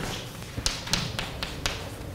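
Chalk tapping on a blackboard as an equation is written: a quick run of about five sharp taps.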